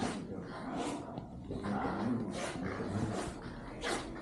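Handling noise and footsteps of someone walking with a handheld phone: a few short rustling knocks about a second apart, with faint voices underneath.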